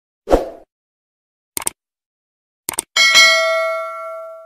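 Subscribe-button animation sound effects: a short thump, then two quick double clicks about a second apart, then a bright bell ding. The ding starts about three seconds in and rings out slowly.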